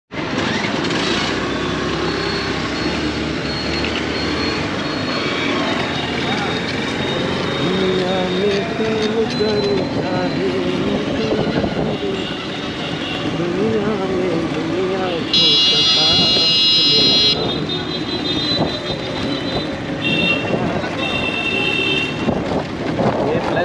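Street traffic heard from a moving rickshaw. A vehicle horn blares for about two seconds a little past the middle, and short honks follow near the end.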